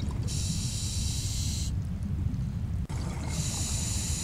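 Scuba regulator hissing on two inhalations, each about a second and a half long and about three seconds apart, over a steady low underwater rumble.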